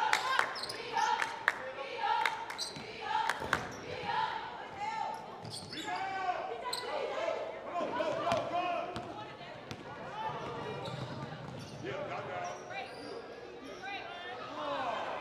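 A basketball bouncing on a hardwood gym floor, the sharp bounces thickest in the first few seconds. Voices call out on and around the court, echoing in the large hall.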